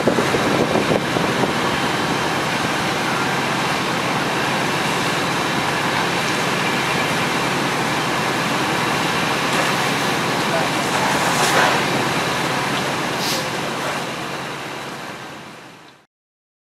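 Steady noise of fire apparatus engines and pumps running, with indistinct voices over it, fading out over the last few seconds.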